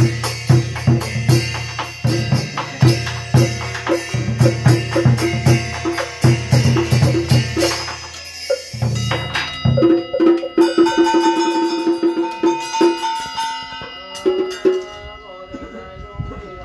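Ceremonial percussion music: drums beaten in a quick, steady rhythm with other struck percussion. About nine seconds in the drumming stops, leaving a ringing bell and a rapid roll of struck notes that fades away.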